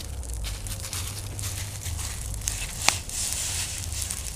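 Dead-leaf bonfire crackling, with one sharp pop about three seconds in.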